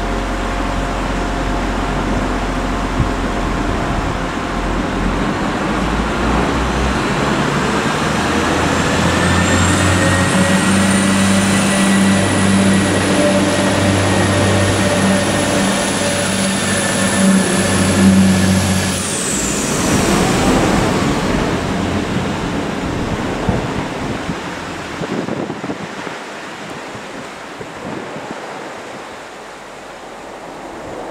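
Class 175 diesel multiple unit's underfloor diesel engines idling, then revving up as the train pulls away from the platform, with a high whine that climbs and holds before dropping off about two-thirds of the way through. The engine sound then fades as the train leaves.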